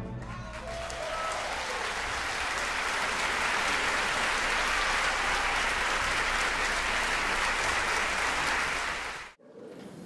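Audience applauding in a concert hall right after the orchestra's final chord. The clapping builds over the first few seconds, then cuts off abruptly near the end.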